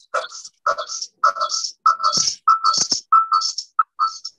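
Garbled, choppy audio on a video call: about nine short warbling bursts, each at the same pitch with hiss over it. Every burst cuts off sharply into silence, with a couple of sharp clicks near the middle. The pattern fits a voice mangled by a faulty connection that is also producing an echo.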